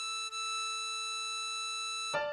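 Synthesized harmonica note, a blow on hole 8 (E6), held steady over a lower sustained backing note. It breaks briefly about a third of a second in, as the same note is played again.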